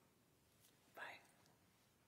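Near silence: faint room tone, with one short, soft breathy vocal sound about a second in, rising in pitch.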